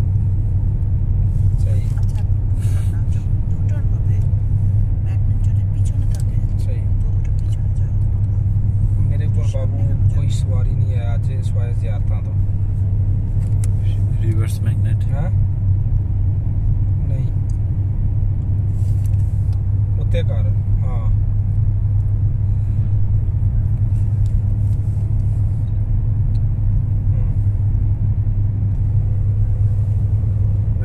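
Steady low rumble of road and engine noise heard inside a car's cabin while it drives along a highway.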